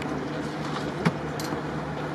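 Steady background noise of an open-air stadium with a constant low hum, broken by one sharp knock about a second in.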